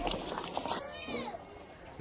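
Outdoor murmur of schoolgirls' voices, with one high-pitched call that rises and falls about a second in. The sound grows quieter toward the end.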